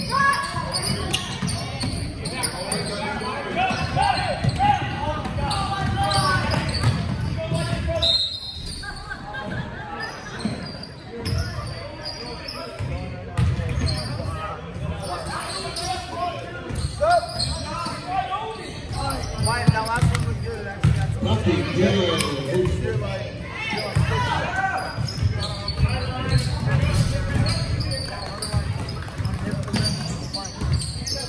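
Basketball bouncing on a hardwood gym floor during a game, with players and spectators talking and calling out in the background, echoing in a large gymnasium.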